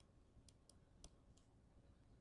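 Near silence with four faint clicks over about a second, from a stylus tapping on a tablet screen while writing.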